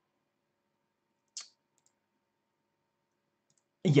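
Near silence, broken by a single short click about a third of the way in; a man's voice starts right at the end.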